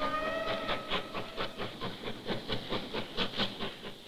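Steam locomotive hauling coal wagons: its whistle sounds once for about a second and a half at the start, over a quick, even chuffing of its exhaust.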